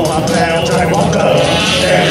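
Live rock band playing, electric guitars and drums, with a man's wavering vocal over them.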